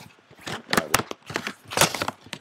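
A handful of sharp clicks and crinkles from a trading-card box and its packaging being handled, several in quick succession around the middle and one sharp one near the end.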